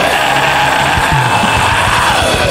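Black metal/sludge music: dense, heavily distorted electric guitars and drums, with a held, wavering higher note running over the top.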